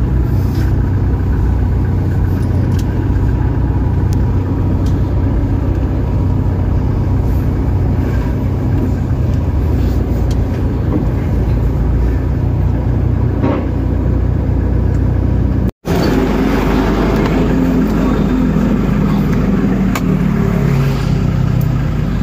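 Car engine running at low speed, a steady low rumble heard from inside the cabin. The sound cuts out for an instant about three-quarters of the way through.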